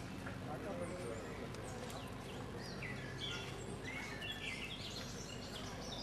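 Small birds chirping in many quick, high notes, some falling in pitch, over a steady low background hum.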